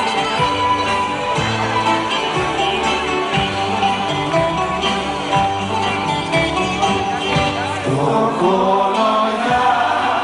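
Live Greek laiko band playing an instrumental passage between sung verses: a plucked-string melody over a steady, rhythmic bass.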